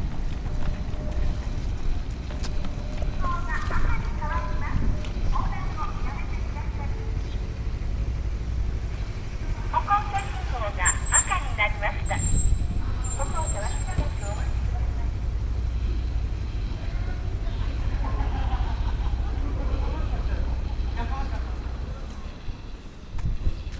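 City street ambience: a steady low rumble of traffic, with snatches of indistinct talk from people a few times.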